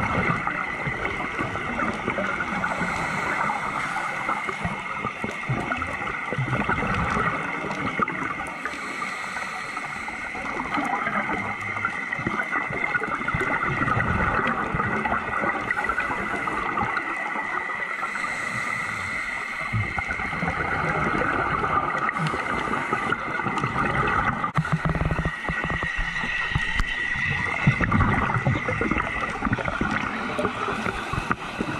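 Underwater sound recorded through a dive camera's housing: a steady muffled wash with gurgling and a constant high hum, swelling and easing every several seconds.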